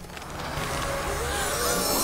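Cartoon dark-magic sound effect as the forbidden book is opened: a rushing, wind-like noise that swells, with eerie wavering tones gliding up and down from about a second in.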